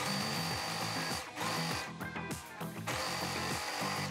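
Overlock machine (serger) stitching the edge of knit fabric in bursts: a run of about a second, a short burst, then another run starting about three seconds in, each with a steady high whine.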